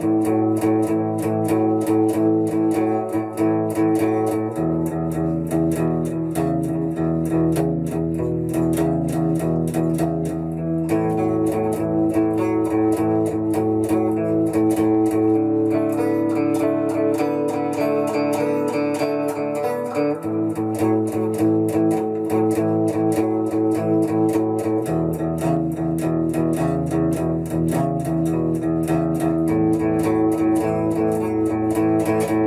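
Amplified electric guitar playing a 12-bar blues with palm-muted power chords, picked with a 1 mm pick in a steady, even rhythm, the chord changing every few seconds. By the player's own account the palm muting still needs work and the second string is not yet coming through strongly enough on the A power chord.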